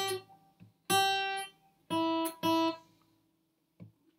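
Steel-string acoustic guitar picked as four single notes: two on a higher pitch, then two on one lower pitch close together, each ringing briefly before it fades.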